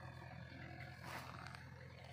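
Faint steady low rumble with light rustling and scuffing from a handheld phone camera being carried through dry grass, a little louder about a second in.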